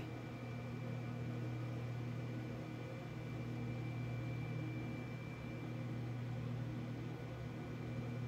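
Steady low hum of a food dehydrator's fan and motor running, with a faint high whine that fades out about halfway through.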